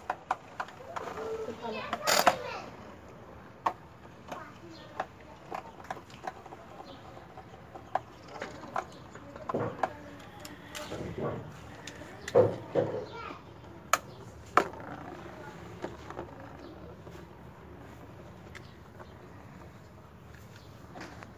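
Beyblade spinning tops clacking against each other and the plastic basin: scattered sharp clicks at irregular intervals, with children's voices calling out now and then in the background.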